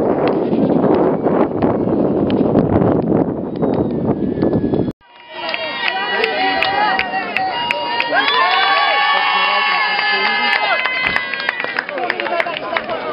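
Dense outdoor noise with scattered sharp clicks, then, after a cut about five seconds in, several spectators' voices calling and shouting at once, with long, held, overlapping calls.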